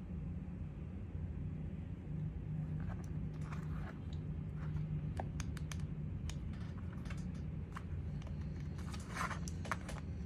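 Small scattered clicks and taps from hands handling a tiny USB-C power bank plugged into the side of a tablet, starting about three seconds in and bunching near the end, over a steady low hum.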